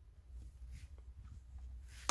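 Faint handling noise: a few soft rustles and small clicks over a low rumble as a hand positions multimeter test leads.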